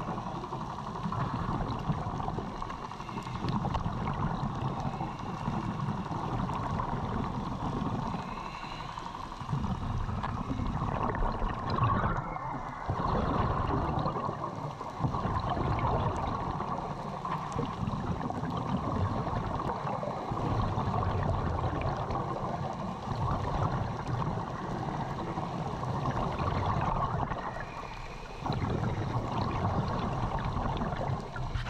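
Underwater water noise with gurgling, swelling and dipping every few seconds.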